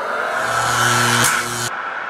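Whoosh sound effect of a TV logo sting, swelling with a low hum beneath it. The high end cuts off suddenly near the end and the rest fades away.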